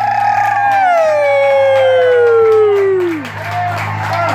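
A karaoke singer's voice holds a long high note, then slides slowly down in pitch for about three seconds before cutting off, over a steady low hum.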